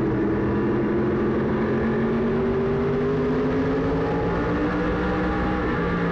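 Modified race car's V8 engine running at steady throttle, heard from inside the cockpit; the pitch rises slightly through the middle and eases a little near the end.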